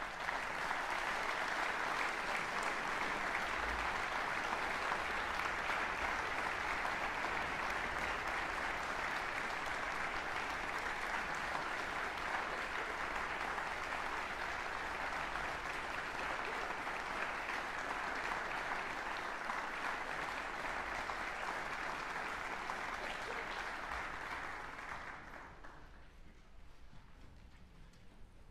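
Audience applauding, steady and sustained, then dying away near the end.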